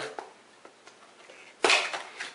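Small cardboard box being opened by hand: a few faint taps of fingers on the box, then a short, louder scrape as the tucked end flap is pulled free, a little over a second and a half in.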